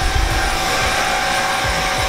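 Steady mechanical hum and whir of brewing-room equipment, with a thin high whine held throughout and a few soft low thuds.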